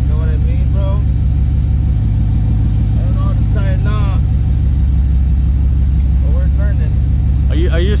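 A pickup truck engine idling steadily, a continuous low rumble, with voices talking briefly over it.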